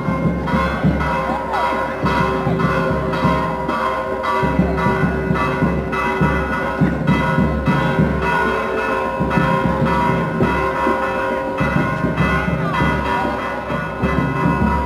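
Church bells ringing in rapid repeated strokes, roughly twice a second, their tones hanging on between strikes.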